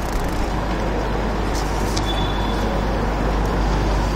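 Steady background rumble with a low hum running under it, and a couple of brief clicks or rustles about one and a half to two seconds in.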